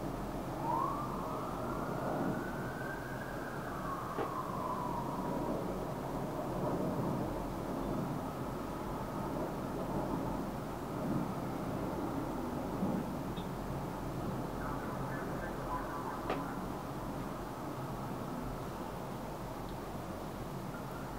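A faint siren wails once, rising in pitch about a second in and falling away by about five seconds in, over steady background noise.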